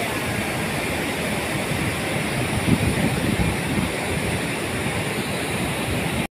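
Floodwater rushing over a weir: a steady, even roar of water.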